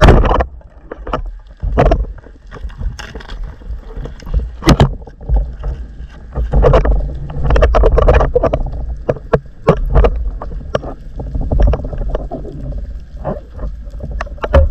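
Underwater action-camera sound of a diver moving: a sharp loud thump right at the start, then irregular knocks and clatters of gear against the housing over a constant rushing, sloshing water noise.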